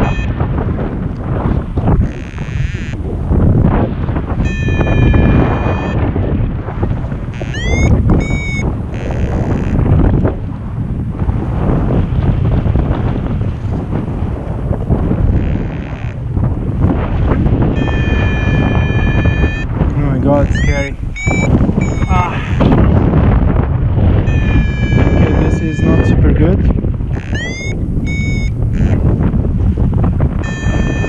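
Steady wind rushing over the microphone of a harness-mounted camera on a paraglider in flight. Every few seconds the cockpit variometer sounds electronic tones: some short, steady beeps, others quick rising chirps.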